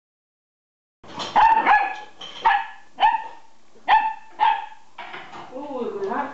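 A nine-week-old collie puppy barking: about six short, sharp, high-pitched yaps in quick bursts, starting a second in.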